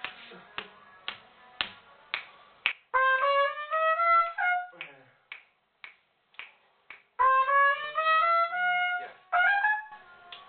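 Trumpet playing two short phrases that climb step by step, with a brief further figure near the end. Before and between the phrases, finger snaps keep the beat at about two a second.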